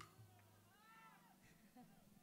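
Near silence in a pause between sung lines, with one faint rising-and-falling voice-like sound about halfway through.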